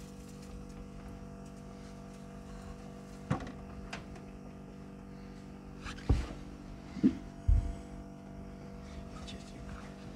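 A few scattered knocks and clicks from hands and tools working under the vehicle, the loudest about six seconds in, over a steady low hum.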